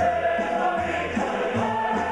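A large mixed Ukrainian folk choir singing, several voice parts sustaining notes together.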